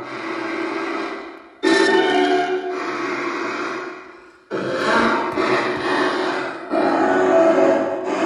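Ghost box radio sweeping through stations, its output run through a spirit portal effects box and played over a small amplifier: a stream of processed, chopped radio sound and music fragments. It cuts in sharply louder about one and a half seconds in, fades around four seconds, then jumps back in and steps up again near the end.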